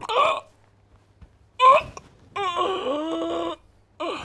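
A man's wailing cry: two short cries, then one long drawn-out wail of over a second that rises a little and holds.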